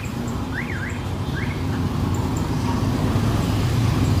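Motorcycle engine and surrounding city traffic heard from a moving motorbike, a steady low rumble that grows louder in the second half. A few quick warbling up-and-down chirps sound in the first second and a half.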